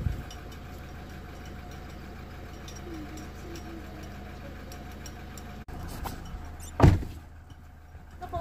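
Steady low hum of an idling car engine, heard from inside the car, with one loud thump about seven seconds in.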